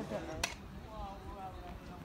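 Faint voices talking at a distance, with one sharp click about half a second in and a low rumble underneath.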